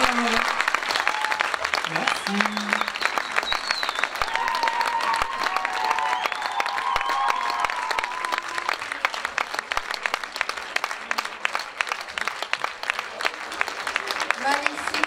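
A crowd applauding, with dense clapping and a few voices calling out over it in the middle; the clapping thins out and gets quieter near the end.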